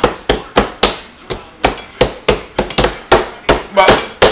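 Hands slapping and patting pizza dough flat on a wooden cutting board, shaping it into a round: a quick, irregular series of sharp slaps, about three a second.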